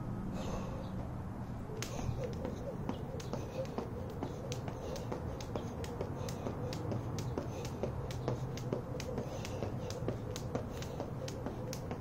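Jump rope slapping the asphalt in a steady rhythm of sharp clicks, about two to three a second, starting about two seconds in.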